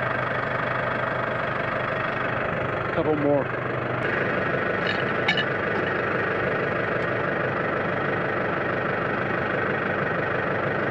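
Case tractor's diesel engine idling steadily. About three seconds in a short vocal sound cuts in, and a few light clicks follow over the next few seconds.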